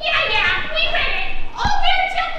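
Young stage actors' voices speaking or calling out, with a single thump shortly before the end.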